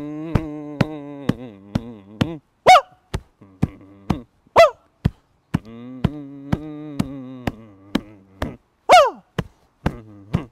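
A man's voice humming long held notes over a steady beat of sharp clicks, about two a second, broken three times by loud falling whoops.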